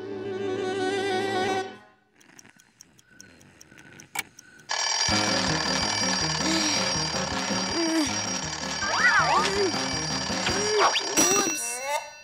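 A music sting ends, then a cartoon alarm clock ticks steadily for a few seconds before breaking into loud ringing with bouncy music, from about five seconds in to near the end.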